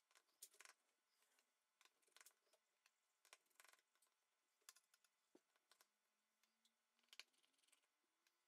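Near silence, with a few very faint ticks of a small precision screwdriver working the tiny screws of a phone's frame.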